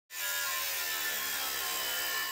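Angle grinder with a thin cutoff wheel cutting through sheet metal, giving a steady high whine.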